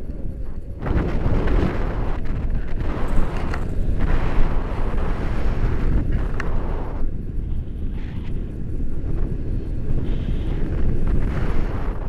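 Wind buffeting the microphone of a pole-held camera on a paraglider in flight: a loud, gusting rumble that swells about a second in.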